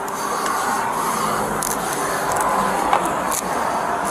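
Steady rustling and scraping noise with a few sharp clicks, as clothing and hands rub against a body camera's microphone during a scuffle at a car door.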